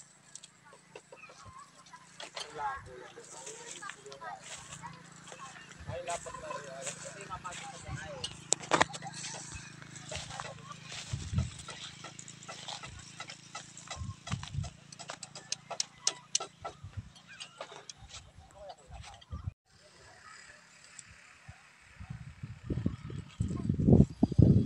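Outdoor ambience of indistinct distant voices, with scattered clicks and rustles from handling close to the microphone.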